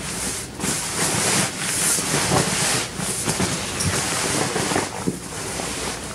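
Sleeping bag being stuffed into the bottom of a backpack: continuous fabric rustling and swishing in quick, irregular pushes as it is packed down tight.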